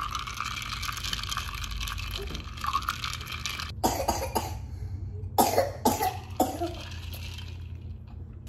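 A plastic straw stirring ice in iced coffee in a glass mason jar, a steady rustling rattle for the first few seconds. Several short, sharp bursts follow, from about four to six and a half seconds in.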